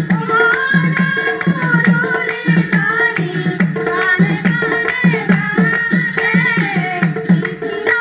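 A group of women singing an Assamese aayati naam devotional song together, its melody wavering and ornamented, accompanied by a barrel drum beating a steady repeating rhythm and small hand cymbals.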